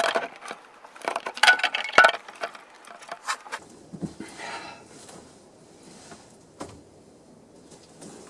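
Close-up rustling of clothing with quick, irregular light knocks and clicks for the first few seconds. It then turns to fainter rustling, with one sharp click later on.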